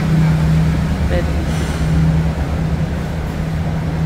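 Isuzu Elf tow truck's diesel engine idling with a steady low drone.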